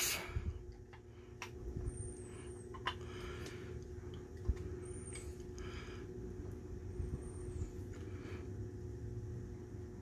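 Faint hand handling of a power steering pump's metal parts: a few light clicks and short scrapes as a brass sleeve is worked off the pump shaft. A steady low hum sits underneath.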